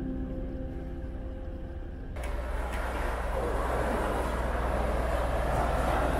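A low steady hum for about two seconds, then a loud rush of churning, turbulent water in a lock chamber as the sluices change the water level. The rush cuts off sharply at the end.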